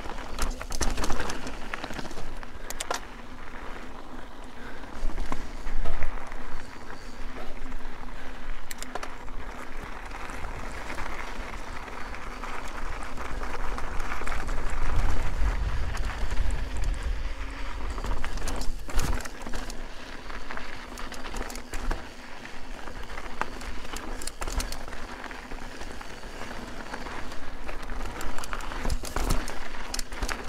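Mountain bike rolling along dry dirt and gravel singletrack, with tyre noise, scattered clicks and rattles from the bike over rocks, and wind rumbling on the camera microphone, strongest around the middle.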